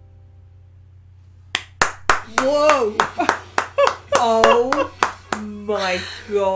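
After a second and a half of quiet, two women clap their hands repeatedly and let out excited wordless cries and laughter.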